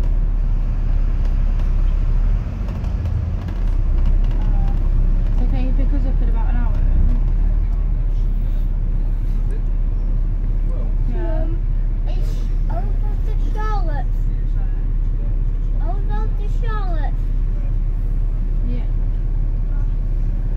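Steady low rumble of a moving double-decker bus, heard from its upper deck, with indistinct voices now and then.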